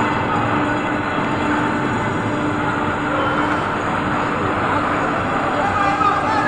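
Outdoor crowd noise from many workers' voices mixed with steady engine noise, with a constant low hum running through it.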